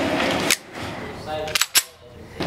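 Slide of a Smith & Wesson CSX 9mm micro pistol racked by hand to chamber a round: two quick metallic clicks near the end as the slide goes back and snaps forward, after a single click about half a second in.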